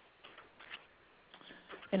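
A pause on a phone-quality conference line: faint line hiss with a few soft ticks, then a voice starts speaking near the end.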